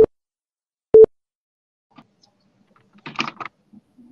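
Countdown leader beeps: short single-pitch beeps a second apart, one right at the start and one a second later, marking the last counts of a countdown. About three seconds in comes a brief, much quieter burst of noise.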